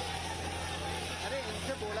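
Steady rumble and hiss of a running engine, with a man starting to speak in Hindi near the end.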